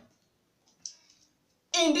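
A single light click a little under a second in, with a few fainter ticks around it, from a hand-held RJ45 crimping tool and cable being handled; speech begins near the end.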